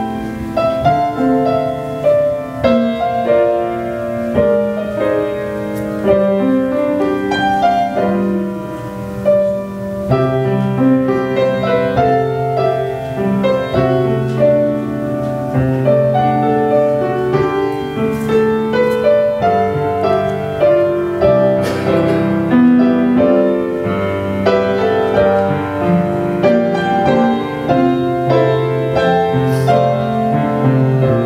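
Grand piano playing a worship prelude of held chords under a melody, with deeper bass notes joining about ten seconds in.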